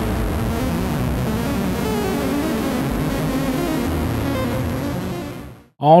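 Intro theme music with layered sustained tones at a steady level, fading out near the end.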